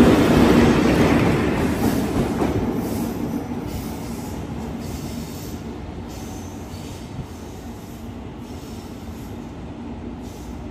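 EF81 electric locomotive running light past at close range, its wheels rumbling on the rails with a steady hum. The sound fades steadily over the whole stretch as it draws away.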